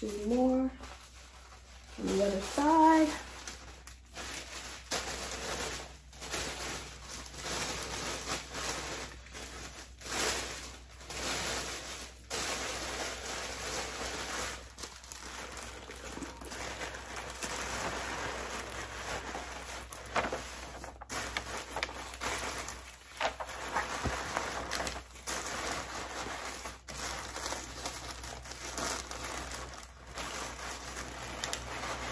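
Tissue paper rustling and crinkling in irregular scrunches as it is handled and tucked into a paper gift bag, after a couple of short hummed voice sounds in the first three seconds.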